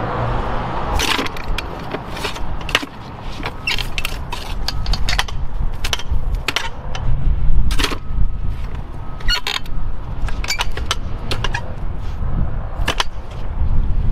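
Clamshell post hole digger worked in a dirt hole: an irregular series of sharp crunching strikes as the blades are dropped in to loosen the soil, with scrapes as the loose dirt is grabbed and lifted out.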